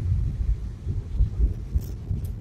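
Low, uneven rumble of a Suzuki Swift hatchback driving on a paved mountain road, heard inside the cabin, with irregular low thumps.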